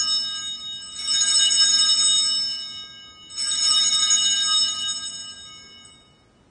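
Altar bells (Sanctus bells) rung at the elevation of the chalice: a ring already sounding fades, then two more rings follow, about a second and about three seconds in, each a bright cluster of high bell tones, the last dying away near the end.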